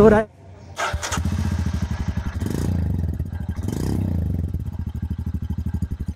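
Royal Enfield 411 cc single-cylinder engine running at low revs with a steady, even thump. It picks up briefly twice in the middle, then fades out near the end.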